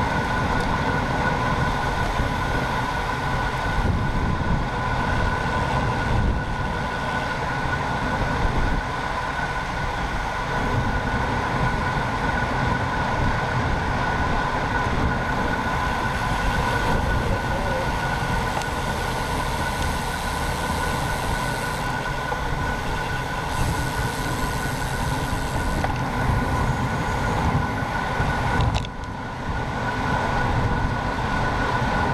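Wind rushing over a bike-mounted action camera with road noise from riding fast in a race pack, a steady high whine running through it. The noise dips briefly near the end.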